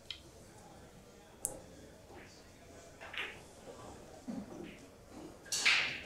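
Quiet room with faint, scattered voices, a single sharp click about one and a half seconds in, and a short hiss near the end.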